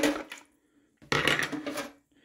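A metal spoon and a plastic bowl clattering against a stainless-steel kitchen sink, a short run of knocks starting about a second in.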